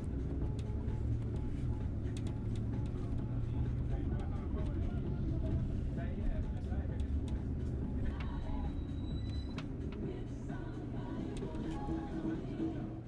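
Bus engine and road noise heard from inside the moving bus: a steady low rumble with faint rattles and clicks.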